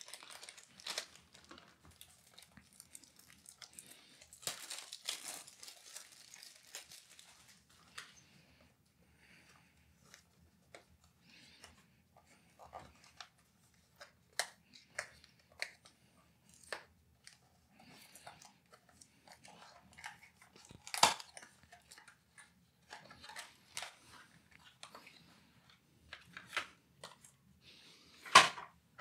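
Packaging being handled as an mSATA SSD is unpacked: a plastic bag crinkling and rustling, then a cardboard box and its plastic tray opened, with scattered light clicks and taps, the loudest about three quarters of the way through.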